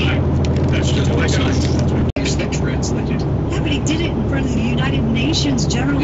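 Talking over the steady low drone of a vehicle on the road; the sound cuts out for an instant about two seconds in.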